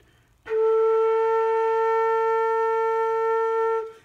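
Homemade six-hole flute in F holding one steady fingered B-flat, starting about half a second in and stopping near the end. The note comes out as a very sharp A instead of B-flat: the B-flat hole is tuned too low.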